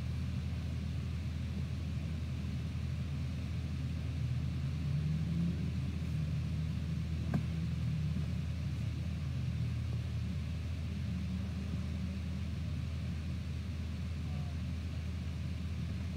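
A steady low rumble with a faint hiss above it, and a single faint click about seven seconds in.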